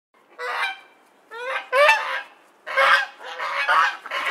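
Waterfowl honking: about six short, nasal calls in quick groups, some rising in pitch.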